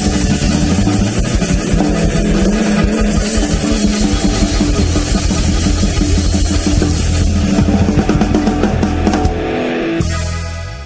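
Live band playing a Paraguayan polka, with a drum kit and guitars driving a steady beat. About nine seconds in the beat stops and a final held chord rings out as the song ends.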